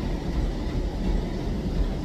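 Rumbling handling noise from a phone's microphone as the phone is carried and rubbed against clothing.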